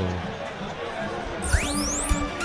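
Steady background noise, then about one and a half seconds in a radio time-check jingle starts with a fast rising electronic sweep and held tones.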